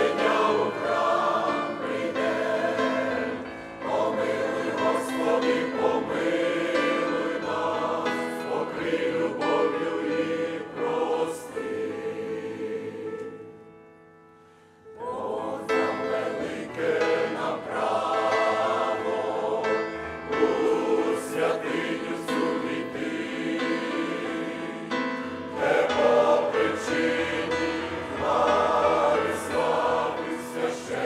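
Mixed adult church choir, men and women, singing a Ukrainian hymn. About halfway through a phrase fades away into a pause of about a second, then the full choir comes back in.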